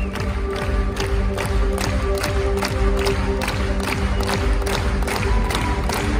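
Live band music with a sustained low chord and a steady beat of sharp hits, about three a second, over crowd noise.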